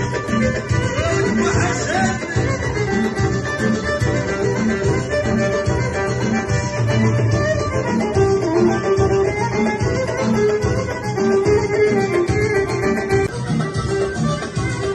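Live Moroccan chaabi band music: a violin played upright on the knee carries the melody over a steady beat from drum kit and hand drum, with keyboard.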